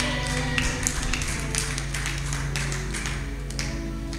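Soft background music of sustained held chords, with scattered light taps and clicks over it.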